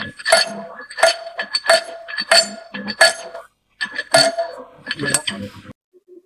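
Steel die driving rod tapped down onto a die in the turret of a rotary tablet press, seating the die in its die pocket. The sound is a series of sharp metallic clinks, each with a short ring, at about two a second and unevenly spaced.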